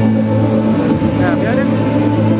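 Stage-show music with a steady low drone, and a voice briefly gliding up and down in the middle.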